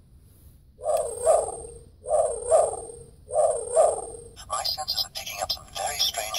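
The small speaker of a Knight Rider KITT novelty USB car charger plays one of its built-in electronic sound effects three times in a row. Each is about a second long with two swells. About four and a half seconds in, a voice clip starts.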